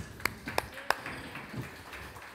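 A few scattered hand claps: four sharp claps in the first second, unevenly spaced, then they stop.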